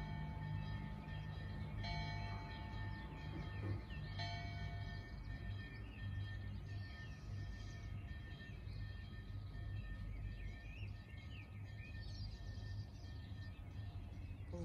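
Soft background music with sustained chords changing about every two seconds. Faint bird chirps come in over it in the second half.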